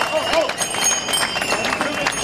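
Marching crowd on a city street: many quick footsteps on the pavement, with scattered voices of the marchers.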